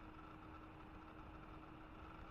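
Near silence: room tone with a faint, steady hum.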